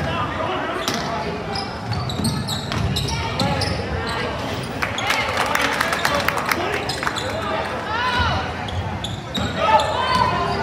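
Basketball bouncing repeatedly on a hardwood gym floor during play, mixed with scattered shouts and voices from players and spectators.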